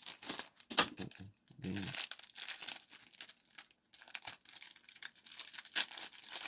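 Plastic wrapping on a pack of birthday candles crinkling and tearing as it is pulled open by hand, in an irregular run of sharp crackles and rips.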